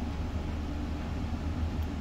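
Steady low mechanical hum with a faint background hiss, unchanging throughout.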